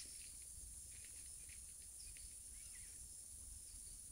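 Faint, scattered short chirps of a double-collared seedeater (coleiro) singing close by but unseen, over a steady high-pitched insect drone.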